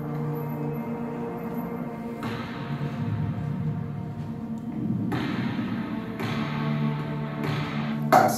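Film soundtrack music from a short film being projected, built on sustained low notes. A thicker, noisier layer comes in about two seconds in and again about five seconds in.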